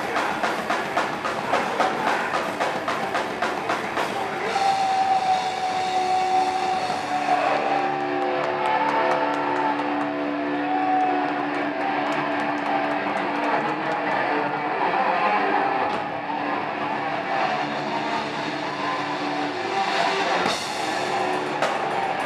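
Live rock band playing loudly. A drum kit is hit fast with cymbals for the first few seconds, then distorted electric guitar holds long, slowly bending notes over sparser drumming, and the full kit comes back in near the end.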